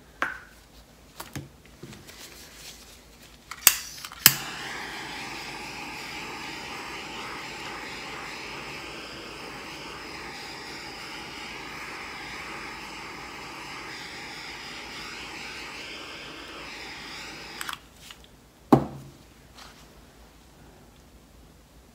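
Handheld butane torch clicked alight with two igniter clicks about four seconds in, then its flame hissing steadily for about thirteen seconds before it is shut off. A single knock follows near the end.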